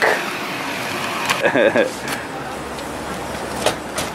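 Steady outdoor traffic noise, with a short voice sound about one and a half seconds in and a few light clicks.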